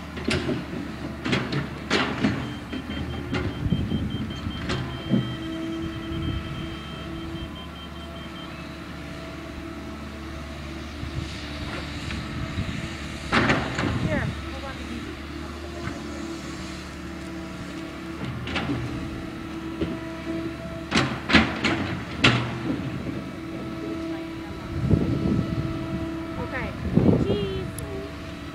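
Excavator's diesel engine running steadily while digging, with several sharp knocks at irregular moments.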